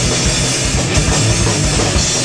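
An amplified electric guitar and a drum kit playing loud rock together, with rapid kick-drum beats under a steady wash of cymbals.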